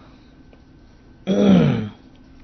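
A man clears his throat once, a short voiced sound falling in pitch, starting a little past a second in.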